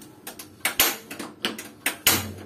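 Rinnai gas stove's knob igniter clicking several times as the burner knob is turned to light the burner under a pot of water.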